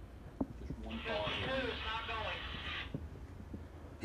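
Faint, muffled talking in the background for about two seconds in the middle, with a few light clicks over a low rumble.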